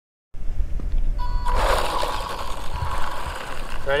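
The electric motor of a WLToys 124019 RC buggy whines steadily from about a second in as the car drives over gravel, with the hiss of its tyres on the loose surface. Wind rumbles on the microphone underneath.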